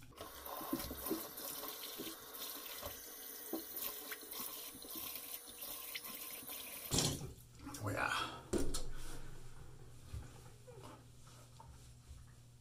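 Bathroom tap running into a sink as a freshly shaved face is rinsed with warm, then cool water. The water runs steadily for about seven seconds and stops, followed by a few louder, uneven splashes and a rush of water that fades away.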